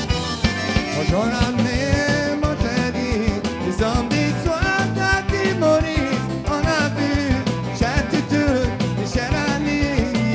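Live Cajun-zydeco band playing a song with accordion, guitar and bass over a steady beat, a man singing lead from about a second in.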